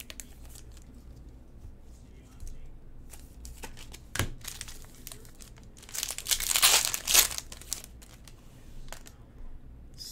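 Foil trading-card pack wrapper being torn open and crinkled, loudest for about a second and a half just past the middle. Light handling clicks and one sharp tick about four seconds in come before it.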